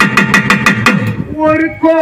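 Pambai double drum played in a fast, even run of strokes, about eight a second, each stroke's low tone sliding downward in pitch. The drumming stops a little after a second in, and a man's singing voice comes back in.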